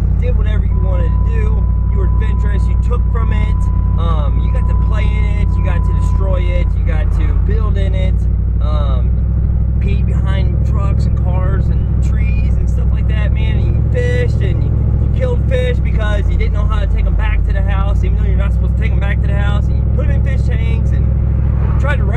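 A man talking inside a moving vehicle's cabin, over the steady low drone of engine and road noise.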